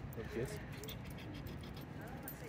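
A quiet spoken "yes" about half a second in, over a steady low background rumble.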